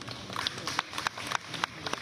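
Scattered hand claps from a small audience, a dozen or so irregular claps over about two seconds.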